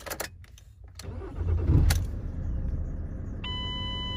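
Ford Transit Mk7 van engine started with the key: a few clicks, a short cranking surge about a second and a half in, then a steady idle. Near the end a steady electronic warning tone sounds from the dashboard while the van reads the rear door as open.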